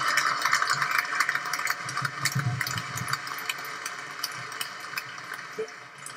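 Crowd applauding, the clapping fading away over the few seconds.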